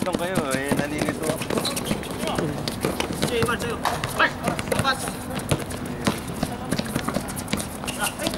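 Basketball being dribbled and players running on a hard outdoor court: a string of sharp thuds and footfalls throughout, with voices calling from the court.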